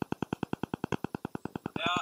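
Semi truck's diesel engine running, heard from inside the cab as a steady, rapid pulsing of about a dozen beats a second.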